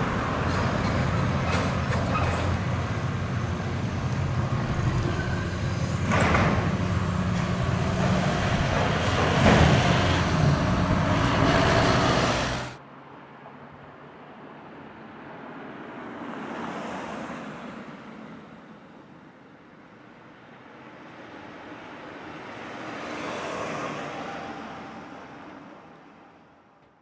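Diesel demolition excavator running hard as it pulls apart a steel-framed building, with crashes of metal and debris about six and nine seconds in. The sound then cuts off suddenly, leaving a much quieter street background in which two vehicles swell past.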